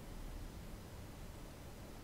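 Faint steady hiss of room tone, with no distinct sound.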